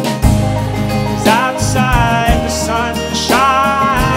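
Folk song played live: acoustic guitar and low bass notes under a male voice singing long, wavering held notes from about a second in, with no clear words.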